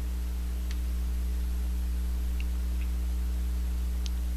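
Steady low electrical mains hum in the recording, with a few faint mouse clicks about a second in and again past the middle.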